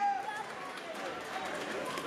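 Indistinct voices in a sports hall: a drawn-out shout trails off just after the start, then mixed chatter from coaches and spectators.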